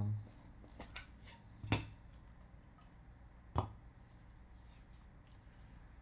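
A few sharp plastic clicks and snaps from a clear plastic trading-card holder being pried open by hand, the loudest just under two seconds in and another a little after three and a half seconds.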